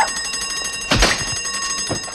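Electric alarm bell ringing continuously with a fast rattling flutter, the bank's alarm signalling a robbery. About a second in, a single pistol shot cracks over it, with a smaller knock near the end.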